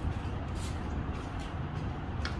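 Steady low rumble, like an engine running nearby, with a couple of faint scrapes of a stick spreading adhesive on plywood.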